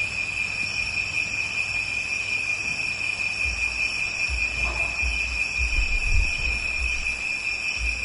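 A steady, unbroken high-pitched insect trill over recording hiss, with low rumbles in the second half.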